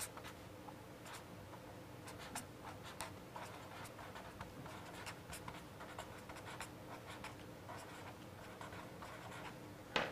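Pen writing on paper: faint, irregular short scratches as the strokes are drawn.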